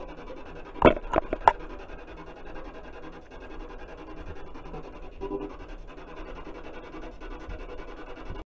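Rubbing and handling noise on a handheld camera's microphone, with three sharp clicks close together about a second in, then a steady rubbing hiss.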